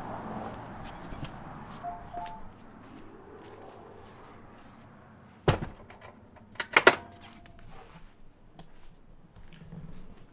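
A door being opened and shut: one thunk about halfway through, then two or three sharp knocks and clicks a second later.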